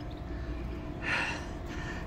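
A person's short breath near the microphone about a second in, over a low steady background hum.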